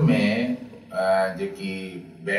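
A man's voice speaking slowly, with long, drawn-out syllables.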